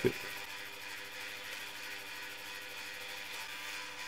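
Bench drill press running steadily, a faint even hum, while its bit drills bolt holes through a moulded fin bracket.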